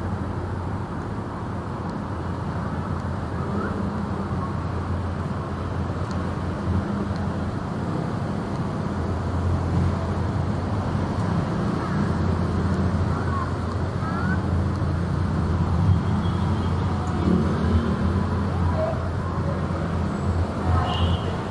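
Cars idling and moving slowly past close by, over a steady low hum. People's voices are faintly mixed in during the second half.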